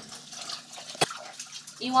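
Dishwater splashing softly in a stainless steel sink as dishes are handled in it, with one sharp knock about a second in.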